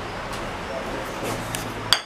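Handling noise with a few faint knocks while moving about the kitchen, then one sharp clink just before the end.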